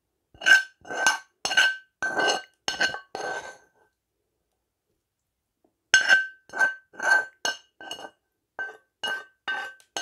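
Hard object clinked repeatedly, each clink ringing at the same pitch: about six strikes roughly two a second, a pause of about two seconds, then about eight more that grow softer.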